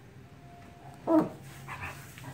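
Dogs vocalizing at play: a thin, high whine, then one loud bark just over a second in, followed by a shorter, softer yelp.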